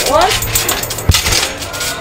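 A single sharp thump about a second in as a person lands on a trampoline mat during a backflip attempt, with light metallic clinking from the trampoline's springs.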